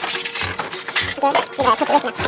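A series of sharp metallic clinks and knocks as a cooking pot and metal kitchenware are handled over an open wood fire.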